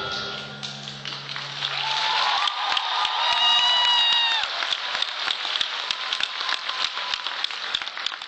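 Audience clapping and cheering at the end of a song, with a long shouted cheer about three seconds in. A held chord of the backing music dies away in the first two seconds.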